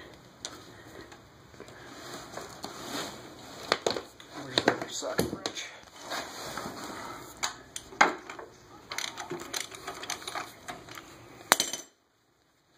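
Scattered metallic clinks and knocks as the 60-pound flywheel of a Ford Model A engine is worked loose and eased off the crankshaft by hand. The sound cuts off suddenly just before the end.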